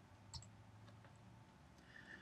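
Near silence: room tone with a faint low hum and a single faint click about a third of a second in.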